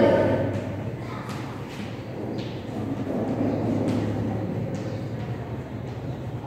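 Chalk writing on a blackboard: a scattering of faint short taps and scratches as letters are formed, over a steady room hum.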